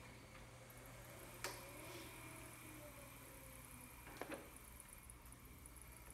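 Faint sounds of a power wheelchair driving: a quiet high-pitched motor whine that starts under a second in, with two light knocks, one about 1.5 seconds in and one about 4 seconds in.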